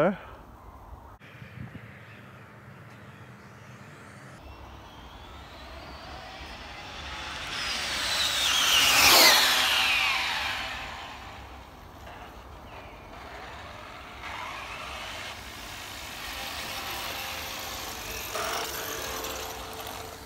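Radio-controlled speed-run car with a Castle 1717 1650kV brushless motor running at half throttle: a high electric whine that grows louder over several seconds, peaks about nine seconds in and drops steeply in pitch as the car speeds past, then fades.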